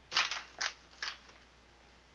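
Three brief crackling noises, each a short scratchy burst, within the first second or so.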